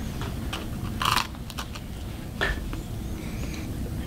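A person biting into and chewing Oreo sandwich cookies, with a short sharp crunch about a second in and faint mouth and handling noises after it.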